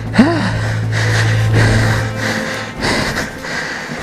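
A man grunting and gasping with effort, then breathing hard, as he strains to push a dirt bike through a rocky rut. A steady low hum runs under it and cuts out about three seconds in.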